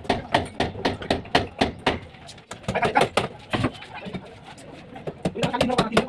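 Hammer blows on a wooden formwork plank, a fast even run of about four strikes a second that stops about two seconds in.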